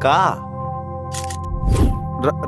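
Background score of steady held tones, a sustained drone under the dialogue, with a short, sharp hissy burst a little over a second in.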